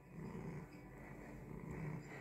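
Domestic cat purring faintly and steadily while having its head scratched, a contented purr under petting.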